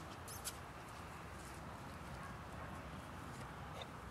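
Quiet outdoor background noise, a steady low rumble and hiss, with a couple of faint short clicks about half a second in.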